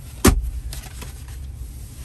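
A single sharp thump about a quarter second in, typical of a car's center-console armrest lid being shut, followed by a few faint clicks and handling noise.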